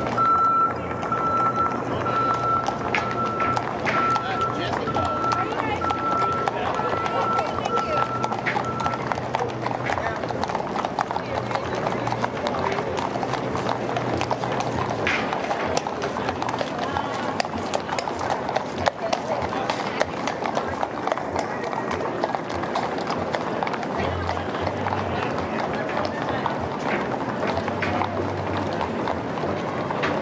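Horses' hooves clopping on an asphalt street as a line of horses walks past, with the indistinct chatter of a crowd throughout. A repeated high beep sounds during roughly the first third.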